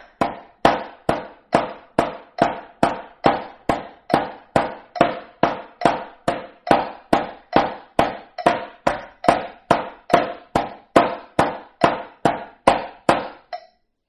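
Wooden drumsticks striking a drum in a slow, even run of eighth notes, about two and a half strokes a second. The pattern is four strokes with the right hand, then four with the left, and each stroke rings briefly.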